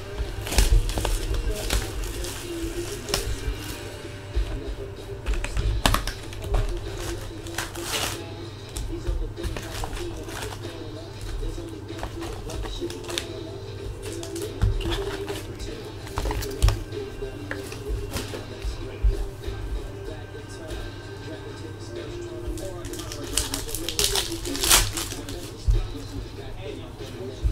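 Cardboard box and foil card packs being handled and opened: scattered crinkles, rips and clicks, with a louder spell of crackling near the end. Background music plays steadily underneath.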